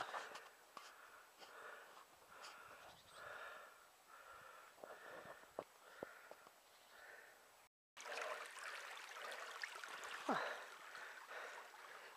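A runner's faint, rhythmic breathing while jogging, a breath about every half second or so. It breaks off just before eight seconds in, and fainter rustling noise follows with one sharp click.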